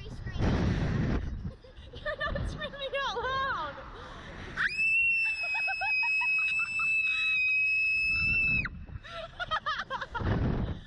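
A young girl's very high scream, held at one steady pitch for about four seconds from about halfway through, over a woman's laughter. Before it, wind rushes past the microphone and there are short rising and falling screams and laughs as the ride swings.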